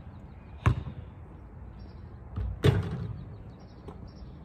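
A basketball hitting hard surfaces in outdoor play: a sharp hit about two-thirds of a second in, then a softer knock and a louder hit with a short ring about two and a half seconds in.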